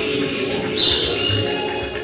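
Modular synthesizer playing electronic music: a steady low drone, then a sharp click a little under a second in, followed by high chirping tones.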